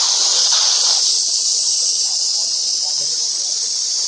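Helium hissing steadily from the high-pressure latex tip of a balloon inflator as it fills a bubble balloon.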